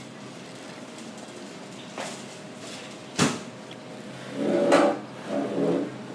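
Café background hum with a faint click about two seconds in and one sharp knock just after three seconds, then two short vocal sounds near the end.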